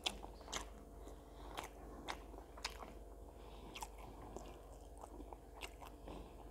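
A person chewing a mouthful of rice and chicken close to a clip-on microphone: faint, irregular soft mouth clicks, about one or two a second.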